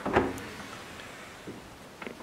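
Freezer door of a fridge-freezer pulled open, the door seal letting go in one short soft sound right at the start, with a faint knock about a second and a half in.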